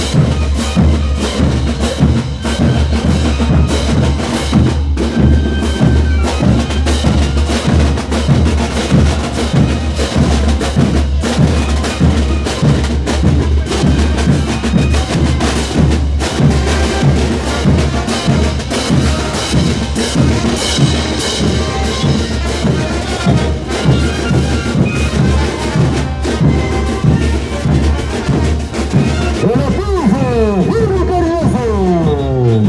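Marching brass band playing, with bass drums, snare drums and clashing crash cymbals beating out a steady rhythm under the brass.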